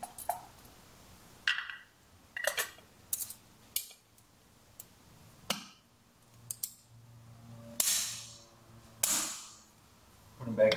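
Handling of a vacuum filter unit and its clip-on lid: a scattered series of sharp plastic and metal clicks and knocks as the lid and its clips are worked and the unit is refitted. Near the end come two longer swishing sounds.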